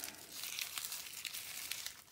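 Cut tissue paper rustling and crinkling softly as it is rolled up by hand into a tassel, with many small crackles.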